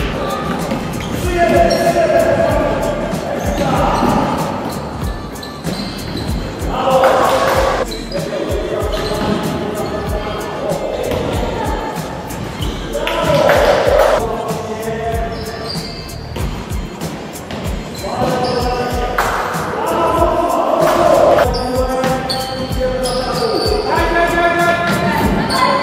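A basketball bouncing and being dribbled on a wooden gym floor, with short repeated thuds throughout, and players' voices calling out now and then in the reverberant sports hall.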